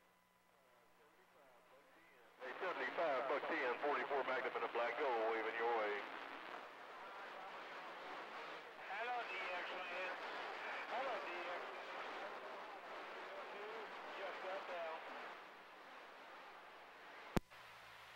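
Voices of other CB operators coming in over a CB radio's speaker, too unclear for the words to be made out. They start a couple of seconds in, stronger for the first few seconds, then weaker. A single sharp click comes just before the end.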